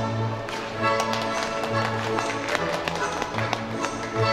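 Orchestral music played over an ice rink's loudspeakers, with several sharp taps mixed in through the middle.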